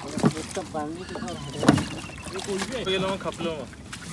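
Indistinct voices, with two sharp knocks about a third of a second and about a second and a half in.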